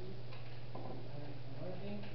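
Steady low hum with faint, distant talking over it and two light clicks in the first second.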